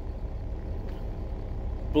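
Steady low engine rumble heard inside a semi truck's sleeper cab.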